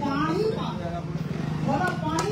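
A woman speaking forcefully into a handheld microphone to an outdoor gathering, her voice at the start and again near the end, over a steady low hum.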